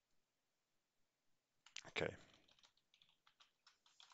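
Typing on a computer keyboard: a quick string of key clicks in the second half, after near silence. About two seconds in, a short voice sound is the loudest thing.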